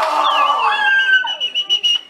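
A shrill, piercing whistle that dips in pitch just after it starts and then holds one steady note for over a second, over party shouting.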